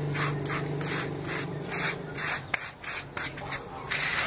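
Hands sweeping and rubbing loose sand back and forth across a concrete floor, in rhythmic scratchy strokes about three a second. A steady low hum runs underneath and fades about halfway through.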